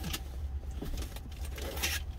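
Truck engine idling, a low steady rumble heard inside the cab, with a brief rustle near the end.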